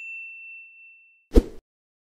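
Subscribe-animation notification bell sound effect: a single high ding ringing out and fading over about a second. About 1.3 s in comes a short, loud thud with a rush of noise, then silence.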